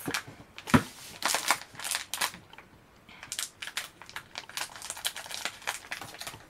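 Plastic snack packet crinkling as it is handled and cut open with scissors: a run of irregular crackles and snips, with a brief lull around the middle.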